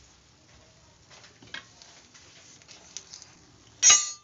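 A spoon spreading gram-flour batter across a nonstick pan, with faint scrapes and light ticks. Near the end comes one loud, sharp clack that rings briefly.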